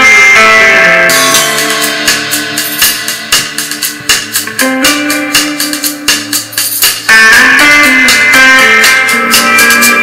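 Guitar-and-drums music with a steady beat played through a bare Kicker CS Series CSC65 6.5-inch coaxial car speaker fed from a phone, with a bright treble. A new loud section comes in about seven seconds in.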